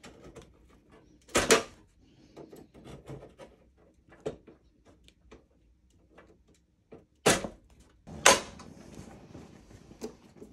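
Plastic wire harness push clips being pried out of a steel bracket with a trim removal tool. They come loose with sharp snaps, the loudest about a second and a half in and twice near the end, with smaller clicks and scraping of tool and harness between.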